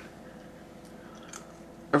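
Faint, soft chewing of a sticky, chewy dried cuttlefish snack, with a few small clicks of the mouth and teeth.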